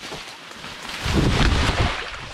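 Someone pushing through dense brush and breaking through into a hidden stream: rustling leaves and branches, then about a second in a louder rushing, rumbling noise as he drops into the water.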